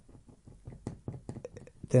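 A scatter of faint, irregular light clicks and knocks, a few to several a second.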